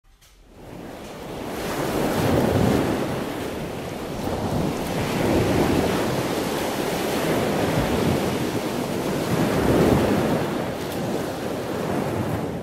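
A loud rushing noise like wind or surf fades in over the first two seconds, then swells and ebbs slowly.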